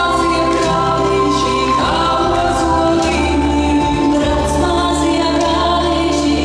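Latvian folk dance music with a group of voices singing together over sustained accompaniment, marked by a sharp beat about twice a second.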